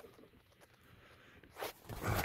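Near silence, broken by one brief rustle of handling noise about one and a half seconds in.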